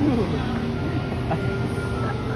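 A brief laugh at the start. Under it runs the steady low rumble and faint even hum of a battery-powered kiddie ride car as it rolls across the mall floor.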